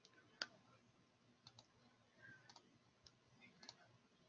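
Near silence with a scatter of faint, sharp clicks, some in quick pairs, the loudest about half a second in.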